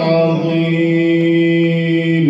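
A man reciting the Quran in melodic tajwid style, holding one long note at a nearly level pitch.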